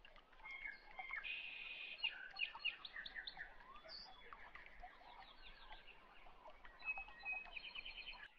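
Small birds chirping and trilling faintly, with quick runs of short repeated notes.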